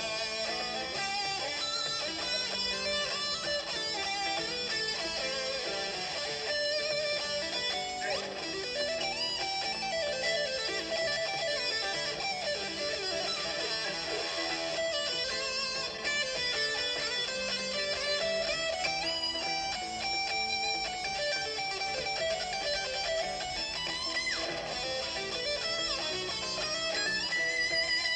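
Electric guitar solo: a continuous run of single melodic lines climbing and falling, played without a break.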